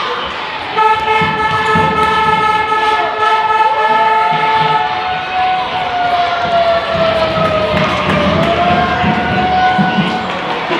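Spectators' handheld horns sounding over crowd noise in a sports hall. A steady horn note runs about four seconds, then a second horn slides up, sags slowly in pitch and rises again.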